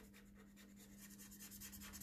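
Faint scratching of a felt-tip pen scribbling quickly back and forth on paper while colouring in, growing a little louder after about a second.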